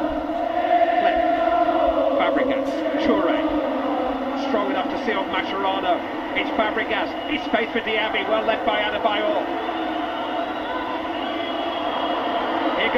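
Televised football match: steady stadium crowd noise with a commentator's voice coming and going.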